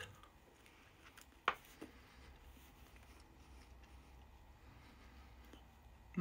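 A person biting and chewing toast: faint, scattered crunching with one sharp crunch about a second and a half in.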